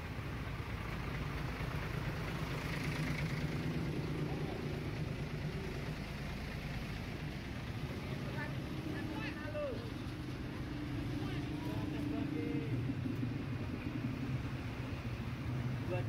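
Tour coach's diesel engine running close by, a steady low rumble, with faint voices in the background.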